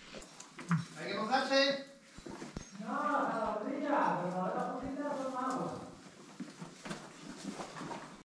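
Indistinct talk from several people, quieter than the nearby speech, in two stretches, with a few faint knocks between.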